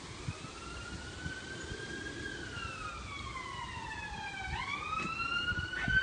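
Emergency-vehicle siren in a slow wail: it rises in pitch for about two seconds, falls for two more, then sweeps up again and grows louder as it approaches. A sharp knock comes near the end.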